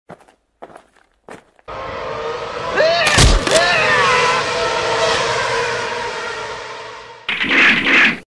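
Dubbed crash sound effect: a few faint ticks, then a sudden loud rush of noise with screeching rises and falls and a heavy thud about three seconds in. It fades over several seconds, and a brief loud burst follows near the end.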